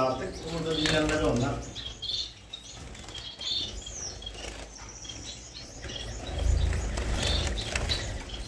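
Gouldian finches fluttering their wings as they flit about a wire cage, with short high chirps scattered throughout.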